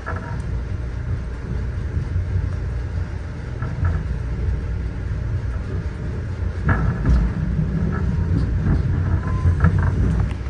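Amtrak passenger train pulling out of a station, heard from inside the coach: a steady low rumble with a few creaks and knocks from the car, one about two-thirds of the way in and another near the end.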